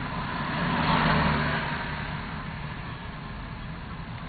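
Road and engine noise from inside a moving car, with oncoming cars passing. The noise swells about a second in, then eases off.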